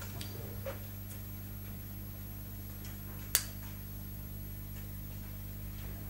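Steady low electrical hum of an old television recording, with a few faint small ticks and one sharp click a little over three seconds in.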